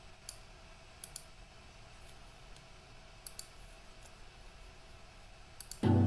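Faint computer mouse clicks, some single and some in quick pairs, spread out over a low background hiss. Just before the end a much louder, low, steady sound cuts in suddenly as the shared video's soundtrack starts.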